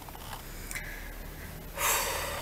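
A woman's breathing: a soft intake of breath, then a sudden, loud, breathy sigh near the end.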